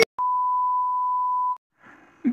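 A steady 1 kHz reference tone of the kind played with TV colour bars, sounding for about a second and a half and cutting off suddenly.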